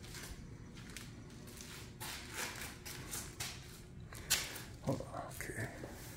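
Footsteps and shuffling on a concrete garage floor with phone-handling rustle, and one sharp tap about four seconds in.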